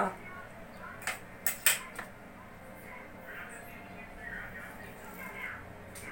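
A man handling a drinking glass and sipping from it: three short, sharp clicks a little after one second in, then faint soft sounds as he drinks.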